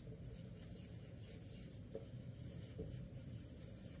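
Faint strokes of a marker pen writing on a whiteboard, with a couple of light clicks.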